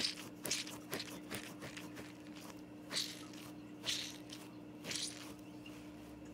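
Plush penguin squeeze toy with a blue glitter ball being squeezed by hand over and over: about six brief, soft rustling squeezes at irregular spacing.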